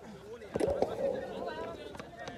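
Voices calling out on a cricket field, starting about half a second in, with a few sharp clicks or knocks among them.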